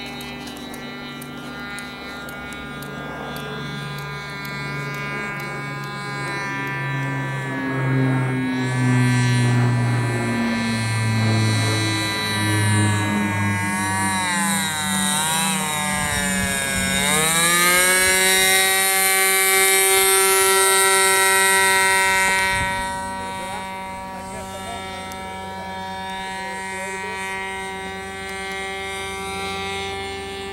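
Motor of a 12-foot radio-controlled ultralight model plane running in flight, a steady whine with many overtones. Its pitch wavers, then dips sharply and climbs again about sixteen seconds in as the plane makes a low pass. It is loudest from about eight seconds in until about twenty-two seconds, then drops back.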